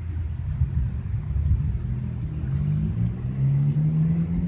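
Low rumble of a motor vehicle's engine, its pitch rising steadily through the second half as it accelerates.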